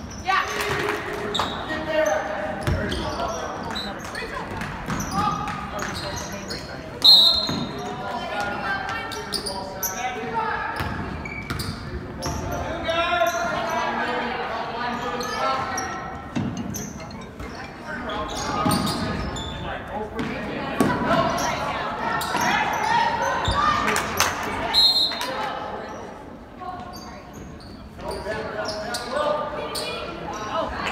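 Basketball bouncing and knocking on a hardwood gym court, mixed with the jumbled chatter of spectators, all echoing in a large gym. Short high-pitched blasts of a referee's whistle come about seven seconds in, the loudest moment, and again near the end.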